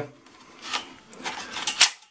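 Sliding phone holder on a drone's radio transmitter being pulled open by hand: a few short scrapes and clicks, the sharpest near the end.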